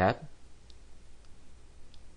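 Three faint computer mouse clicks, spaced a little over half a second apart, over a low background hiss.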